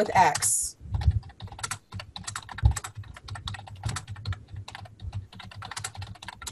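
Computer keyboard being typed on: a quick, uneven run of keystrokes starting about a second in, as a line of text is entered.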